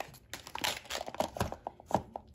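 Hands rummaging through small plastic stationery items in a desk organiser: rustling with a scatter of light clicks and knocks, two sharper clicks near the end.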